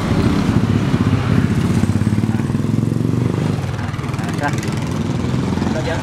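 A small motorcycle engine running steadily close by, a low, even hum.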